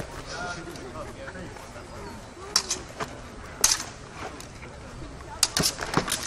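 Longswords striking in a sparring exchange: a sharp clack about two and a half seconds in, another about a second later, and a quick run of two or three clacks near the end.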